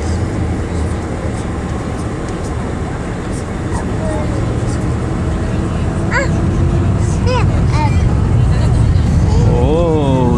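Jet airliner engine and cabin noise heard from inside the cabin, a steady low rumble that grows gradually louder. A small child makes a few brief, high, wordless vocal sounds over it in the second half.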